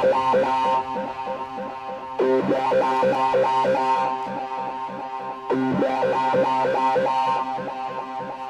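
Goa trance music: layered synthesizer lines and a fast plucked arpeggio in a breakdown without the kick drum, swelling in repeated phrases about every three seconds.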